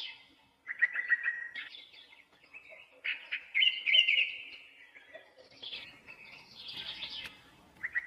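Small birds chirping and trilling in several short phrases with brief pauses between them.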